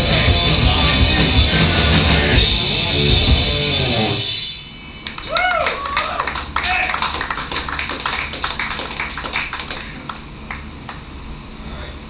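Live punk band with distorted guitars, bass and drums playing loudly, stopping abruptly about four seconds in. Then scattered clapping with a few whoops and shouts from the audience.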